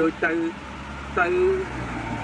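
A man speaking Khmer in two short phrases over a steady low rumble of road traffic.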